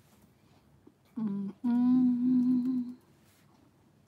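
A woman's closed-mouth 'mm-hmm' hum: a short lower note, then a longer, steady, slightly higher one lasting about a second.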